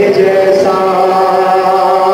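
A man chanting a devotional poem through a microphone, holding one long steady note.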